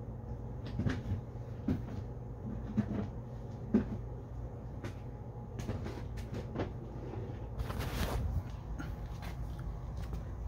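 Several scattered light knocks and clatters of plastic snake tubs being handled and moved, over a steady low hum.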